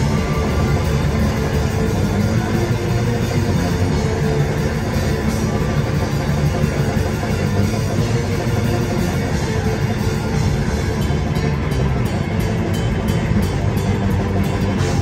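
A metal band playing live: distorted electric guitars, bass, keyboard and drums, loud and dense throughout, with a run of sharp, rapid drum hits in the last few seconds.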